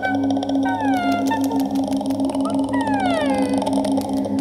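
Experimental music for voice in extended vocal technique: stacked voice tones slide slowly downward in pitch, once about a second in and again from about three seconds. They sit over a steady, gently pulsing low drone.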